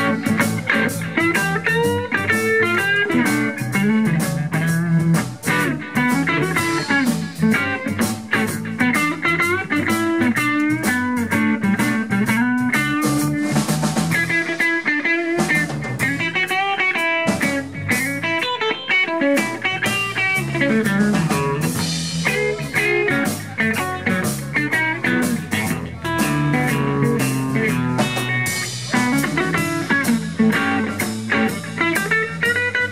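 Live blues trio playing an up-tempo blues instrumental: a Gibson Les Paul goldtop electric guitar carries the lead melody with string bends, over an electric bass and a drum kit. The bass drops out briefly a couple of times around the middle.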